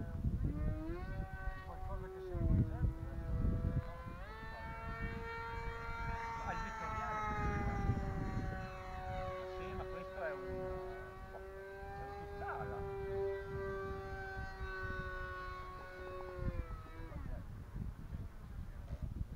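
Electric motor and propeller of an E-flite Scimitar RC plane whining in flight, the pitch sliding up and down as it moves about the sky. Wind rumbles on the microphone, strongest in the first few seconds.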